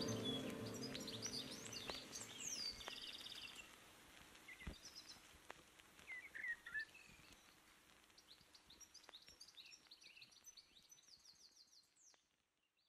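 The beat fades out over the first few seconds, leaving faint birdsong ambience in the track's outro: many short chirps, whistled glides and trills. There is a soft thump about five seconds in.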